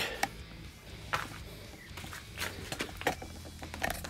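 A few scattered light knocks and clicks over a low steady hum: handling and footstep noises while walking across a garage floor.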